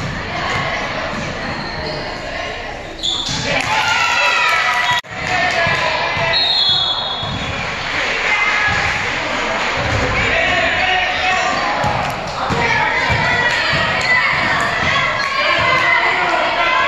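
A basketball bouncing repeatedly on a gym floor, under girls' voices calling and chatting that echo in the hall. The sound cuts out briefly about five seconds in.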